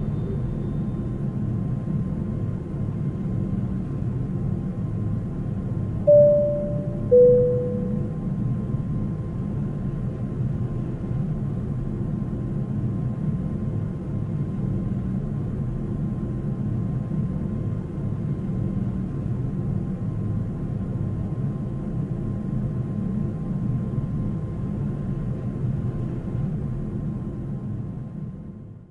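Steady low rumble of an airliner cabin with its jet engines at low power while taxiing. About six seconds in, a two-note falling chime sounds from the cabin PA system.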